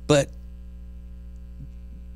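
Steady electrical mains hum with a stack of even overtones, running under a single short spoken word at the start.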